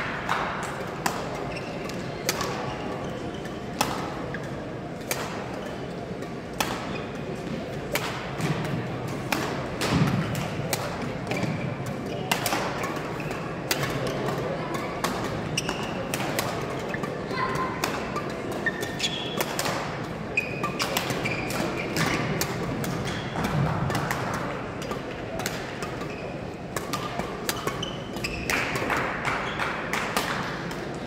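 Badminton rackets hitting shuttlecocks on several courts at once: sharp pops at an irregular pace, echoing in a large gym hall. Short shoe squeaks on the court floor and a murmur of voices run beneath.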